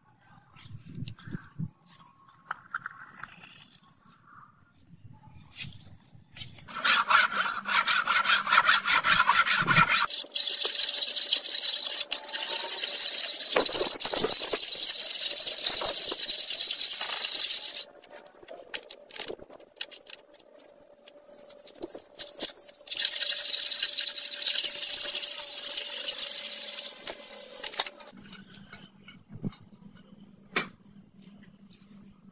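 A hand tool scraping across a rough cast metal bar clamped in a vise, in long spells of rapid strokes with a pause in the middle, after a few quiet clicks.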